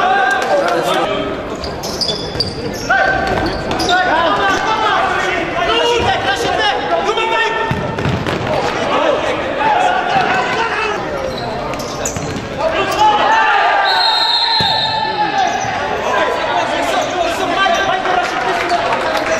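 Futsal match in a sports hall: players' shouts and a ball being kicked and bouncing on the hard floor, with the hall's echo. A short whistle blast comes about two-thirds of the way through.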